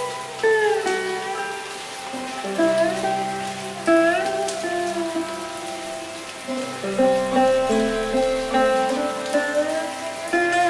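Sitar playing slow plucked notes with sliding pitch bends over a steady low drone, layered over a steady rain sound.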